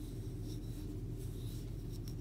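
Faint, soft rubbing of yarn drawn over a wooden crochet hook as a single crochet stitch is worked, over a steady low hum.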